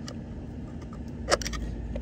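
A small screwdriver working the airbag spring clip behind a Volkswagen steering wheel: one sharp metal-on-plastic click about a second and a quarter in, followed by a few fainter ticks.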